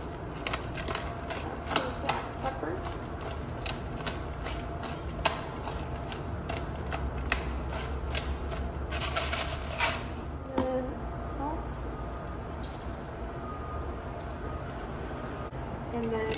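Ground chili powder shaken out of a small glass spice jar over sliced potatoes: a run of quick, irregular taps and clicks for about ten seconds, then only a few more, over a steady low hum.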